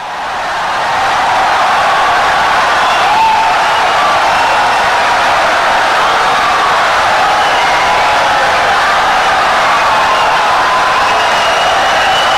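An audience applauding and cheering: a dense, steady clapping, with faint whoops in it, that swells up over the first second and then holds.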